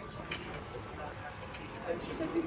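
Street ambience with faint, indistinct voices of passers-by and people at café tables, over a steady background hum.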